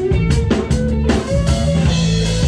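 Live rock band playing: electric guitars over a drum kit, with steady drum strikes under sustained guitar notes.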